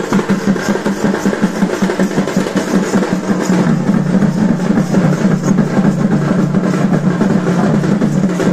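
Danda Nacha folk dance music: fast, dense drum and percussion beats over a steady low hum.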